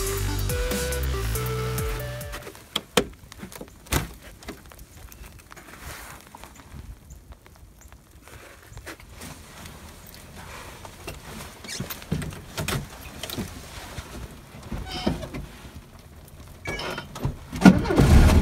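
Background electronic music fades out over the first two seconds or so. Then come quiet knocks and two sharp thunks, the 1973 Volkswagen Beetle's door opening and slamming shut. Near the end the Beetle's air-cooled flat-four is cranked by the starter and catches straight away in the icy cold.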